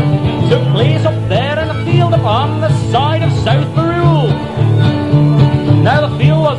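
Acoustic folk band playing an instrumental break: strummed acoustic guitars and steady low bass notes under a lead line of quick swooping, bending notes.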